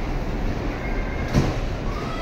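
Bumper car running across the rink floor: a steady rumble, with one sharp knock about a second and a half in.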